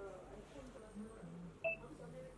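Faint voices in the background, with one short, sharp electronic beep about a second and a half in.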